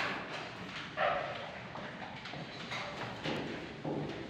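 A handful of separate knocks and clacks on hard surfaces, about five spread over a few seconds, with quiet room noise between them.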